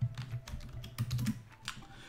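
Computer keyboard keys clicking in a short run of irregular keystrokes as a typo in a word is corrected.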